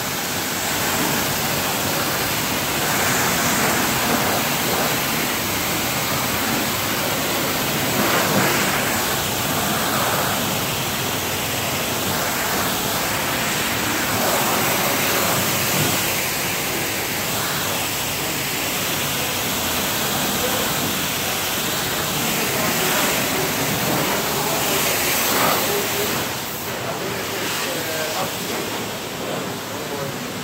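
Self-serve car wash high-pressure wand spraying water onto a pickup truck's body panels: a steady hiss of spray and splashing that drops a little a few seconds before the end.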